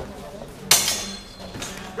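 Training longswords clashing: one sharp metallic strike about two-thirds of a second in, with a brief ring, followed by a fainter knock.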